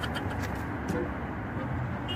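Steady low outdoor background hum of distant traffic.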